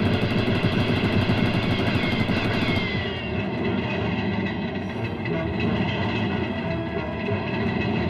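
Cartoon sound effects: rapid submachine-gun fire rattling for about the first three seconds, then the steady rumble and clatter of a speeding train.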